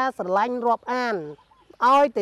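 A man speaking Khmer in a raised, sing-song voice, with a short pause a little past the middle.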